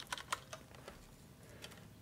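Computer keyboard typing: a quick run of light keystrokes over the first second, then two more near the end, as a value is entered into a settings field.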